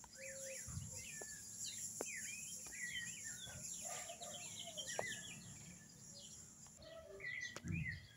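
Several birds chirping and singing in quick, overlapping short calls, over a steady high hiss that cuts out about seven seconds in.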